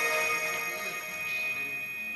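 Live neo-prog rock band music in a quieter passage: steady held notes that slowly fade in level, with no singing.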